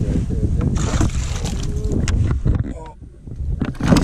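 Wind rumbling on the microphone with faint voices, then near the end a loud splash as a hooked northern pike thrashes at the water's surface beside the boat.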